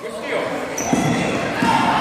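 A basketball being dribbled on a gym floor, a few bounces, under the chatter and shouts of spectators echoing in a large gym.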